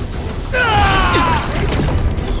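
A high cry falling in pitch for about a second, from a character flung through the air by a blow, over a low rumble of fight sound effects.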